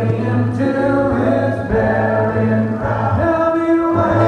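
Male vocal group singing a sea shanty a cappella in close harmony, holding long chords that shift every second or so.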